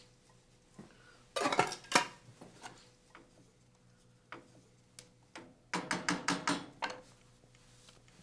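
Kitchen handling sounds as canned clams are tipped from their tin into tomato sauce and stirred in with a wooden spoon: scattered clinks and knocks of metal and utensil on the pot, with a quick run of clicks a little past the middle.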